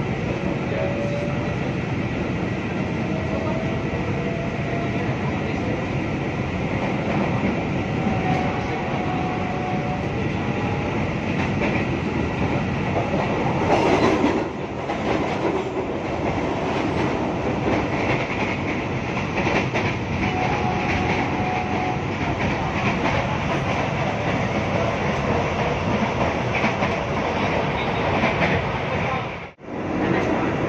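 Interior running noise of a KRL electric commuter train at speed: a steady rumble of wheels on rail and the moving car. It grows louder for a moment about halfway through and cuts out for an instant just before the end.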